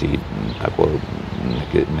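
Speech: a man talking, mid-sentence.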